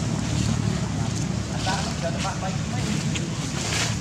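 Wind rumbling steadily on the microphone outdoors, with a few faint ticks and short high blips over it.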